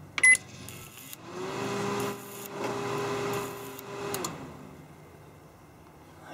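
A keypad beep, then the opened-up Panasonic inverter microwave powers up with its magnetron unplugged. A hum rises to a steady pitch with a hiss over it for about three seconds, the high-voltage output arcing, then winds down as the oven cuts itself off.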